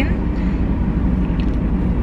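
Steady low rumble of a car idling, heard inside the cabin, with a faint short click about one and a half seconds in.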